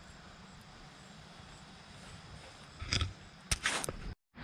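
Faint steady outdoor background, then in the last second a few sharp clicks and short rustling bursts, of the kind made by handling a camera or brushing through foliage.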